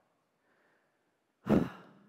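A man sighs once, a loud breathy exhale about one and a half seconds in that tails off, after a short silent pause.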